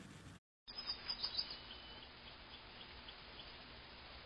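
Faint hiss with a run of short, high chirps repeating about three times a second, after a few louder ticks about a second in.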